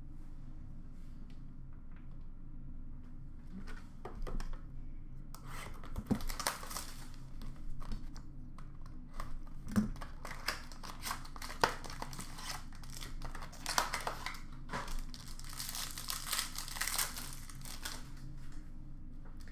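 Trading-card pack wrappers being torn open and crinkled by hand, with cards handled. After a quiet stretch of low room hum, the crackling and rustling starts about five seconds in, with sharp clicks among it.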